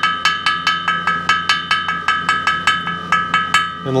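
Small ball-peen hammer tapping lightly and quickly, about six taps a second, around the masked edges of a finned aluminium two-stroke cylinder to cut the masking tape along its edges. The cylinder rings with a steady high tone that carries on between the taps.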